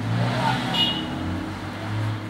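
A steady low engine-like hum, like a motor vehicle running close by. It eases a little in the middle and swells again near the end.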